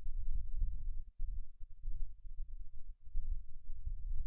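Low, irregular rumble with no speech. It drops out briefly about a second in and again near the three-second mark.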